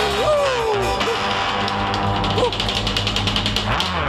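Live rock and roll band playing: a voice sings a sliding line in the first second, then the drum kit and cymbals beat out rapid, even hits over a held low note.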